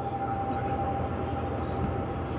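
Steady hum and hiss of a public-address system between a speaker's sentences, with a faint high steady whine running through it.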